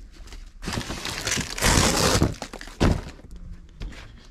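Cardboard boxes and loose plastic wrap being handled and shifted in a pallet box: a stretch of rustling with three sharp knocks, the loudest between about one and a half and three seconds in.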